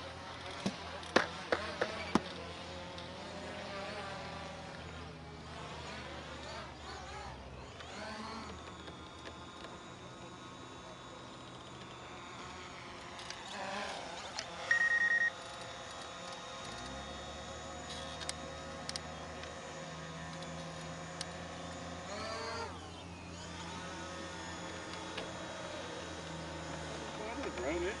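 Background music with long held chords that change every few seconds. A short, high beep sounds about halfway through.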